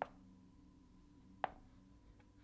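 Two light knocks about a second and a half apart: chess pieces being set down on a Chessnut Air electronic chess board during quick moves.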